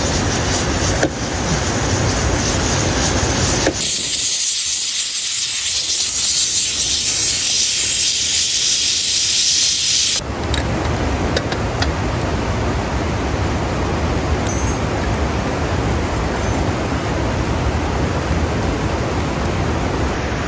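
Pressure cooker on a wood fire venting steam in a loud, steady, high hiss that starts suddenly about four seconds in and cuts off about six seconds later. Before and after it, a steady, even rushing noise.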